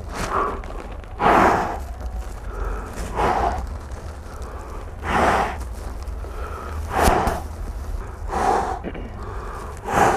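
A young man breathing hard in panic, one loud, rough breath about every two seconds.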